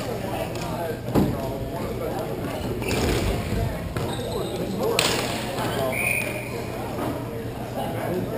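Hockey play on an indoor rink: sharp knocks of sticks and ball, the loudest about a second in and others around three and five seconds in, with a brief high squeak about six seconds in. Players call out throughout.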